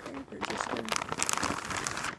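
Package packaging crinkling and rustling in irregular bursts as it is opened and handled, picking up about half a second in.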